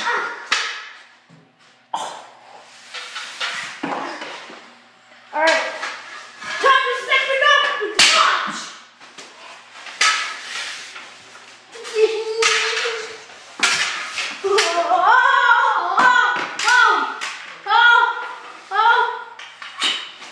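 Boys' voices shouting and talking unintelligibly, broken by sharp knocks of hockey sticks on a ball and hard floor, the loudest about eight seconds in.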